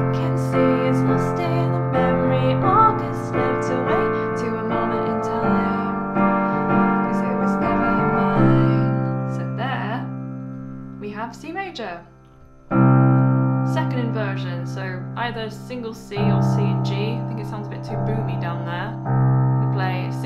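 Piano playing held chords over a left-hand bass note, moving through the chorus progression F, B♭maj7, Gm7, C and changing chord every few seconds. The sound breaks off briefly about twelve seconds in, then the chords resume.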